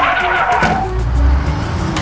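Car tyre-screech sound effect, a sudden skid lasting under a second, over light background music.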